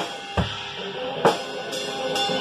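Acoustic drum kit being played: a few loud kick-and-snare strikes at uneven spacing, with cymbals washing between them.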